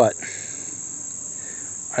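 Steady, high-pitched trilling of insects, one unbroken tone with no gaps.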